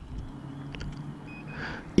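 Faint clicks as the Kymco AK550's keyless ignition knob is pressed, over a steady low background hum, with a brief high-pitched tone a little past the middle.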